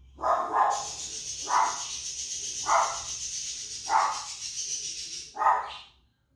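Five loud, short animal calls spaced about a second apart, over a steady high hiss; the sound cuts off suddenly at the end.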